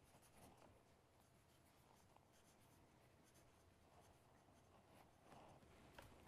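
Faint scratching of writing by hand on paper: short, irregular strokes over quiet room tone.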